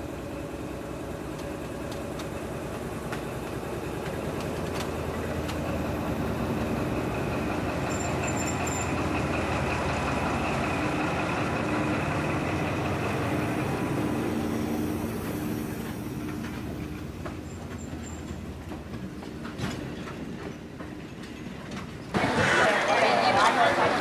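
Diesel locomotive passing slowly at close range, its engine running with a steady hum that grows louder as it draws level and then eases off, followed by passenger carriages rolling by with scattered clicks from the wheels on the track.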